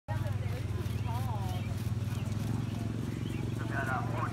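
Voices talking in the background over a steady low hum, with livelier talk near the end.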